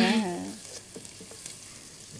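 Food sizzling in hot oil in a frying pan, a steady quiet hiss with a few faint clicks.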